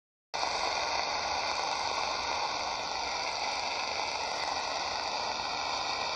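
Steady shortwave static hissing from an XHDATA D-808 portable radio's speaker, tuned to 11720 kHz, with no programme audio yet; it starts a moment in.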